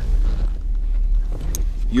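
Steady low rumble inside the van's cabin, with a single light click about one and a half seconds in as a charging-port cover is flipped open.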